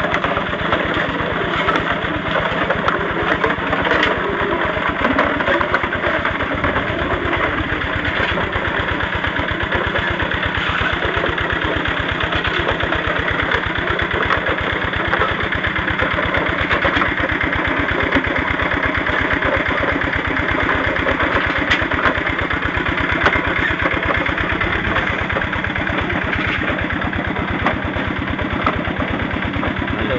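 Small stationary engine running steadily with an even pulse. It belt-drives a rotating drum mill that tumbles ore rock to grind it.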